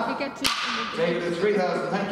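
A single sharp crack of an auctioneer's gavel striking the rostrum, ringing briefly in the hall.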